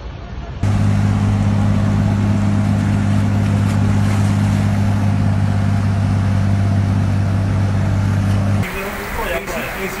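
A steady low motor hum under a hiss, starting suddenly about half a second in and cutting off near the end. It is then followed by rushing floodwater with voices.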